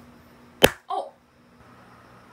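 A single sharp slap of a hand striking a person, followed a moment later by a short vocal cry.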